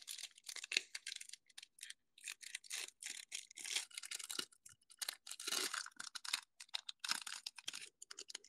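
Foil trading-card pack crinkling and tearing as it is handled and peeled open, in many short irregular rustles.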